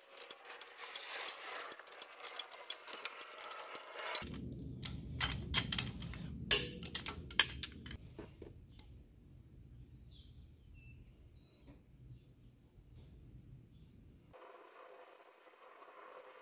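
Long ratcheting torque wrench clicking and ratcheting on a Cat 3126B/C7 diesel's cylinder head bolts as they are rechecked at 96 foot-pounds; the wrench's click is the sign that a bolt has reached that torque. The sharp metallic clicks come in a cluster, loudest about six and a half seconds in, over a low hum, and mostly die away after about eight seconds.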